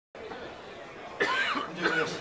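Steady room noise in a hall, then about a second in, short vocal sounds from a person with a pitch that rises and falls.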